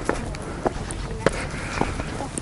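Footsteps walking on a dirt path, four steps about half a second apart.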